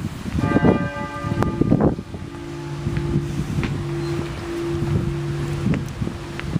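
Cathedral church bells ringing: a struck chord of ringing tones about half a second in, then a steady low hum that carries on, with wind rumbling on the microphone.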